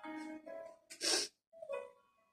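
A single sharp sneeze about a second in, over soft background music with sustained notes.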